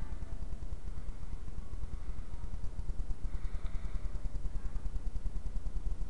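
Steady low hum and rumble with a faint hiss behind it, and no speech or music.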